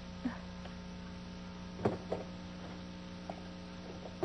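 Steady low electrical mains hum in the soundtrack, with a few faint, brief sounds about two seconds in.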